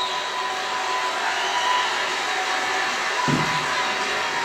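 A convention crowd applauding and cheering, a steady wash of noise heard through the room's speakers from the played news clip, with a brief low thump near the end.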